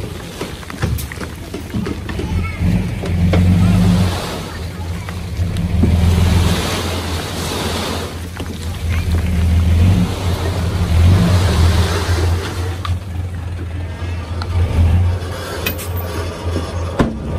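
Dump truck's engine revving in repeated swells to drive the tipper hoist, with a load of soil and stone sliding out of the raised bed.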